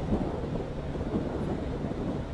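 Wind buffeting the microphone, heard as an uneven low rumble.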